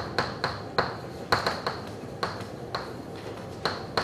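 Chalk writing on a blackboard: about a dozen sharp, irregular taps as the chalk strikes the board, each with a brief high ring.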